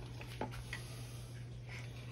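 Wooden spoon stirring thick gravy in an enameled cast-iron pot, with a few faint taps of the spoon against the pot, over a steady low hum.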